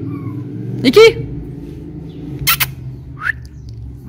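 A woman calls a pet by name, then makes a brief sharp click and a short rising whistle to call it, over a steady low hum.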